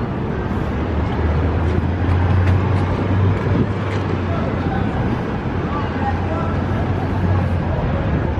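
City street traffic noise with a steady low engine hum that swells about a second in and eases near the end, and passersby talking.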